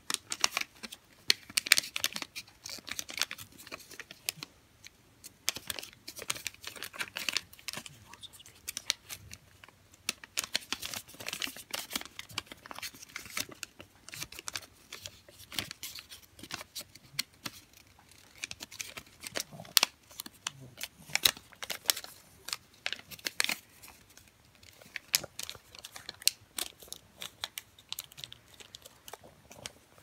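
A sheet of origami paper being folded and creased by hand, crinkling and crackling in irregular bursts throughout as the flaps are pushed into place.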